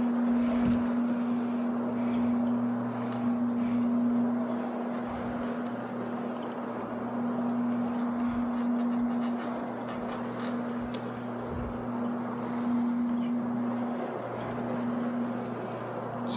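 Electric rotary carpet-cleaning floor machine running across carpet: a steady motor hum under the rushing scrub of the pad turning in the pile, easing briefly near the end.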